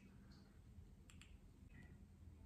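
Near silence: room tone, with two faint, closely spaced clicks just after a second in.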